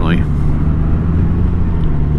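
Honda Gold Wing's flat-six engine running at a steady cruising speed under way, a low even hum mixed with wind and road noise.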